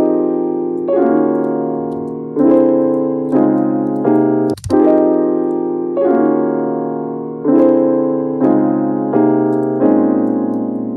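FL Keys software piano playing a chord progression built in Scaler: block chords struck roughly once a second, each ringing and fading before the next. Playback cuts out briefly with a click near the middle, then the chords resume.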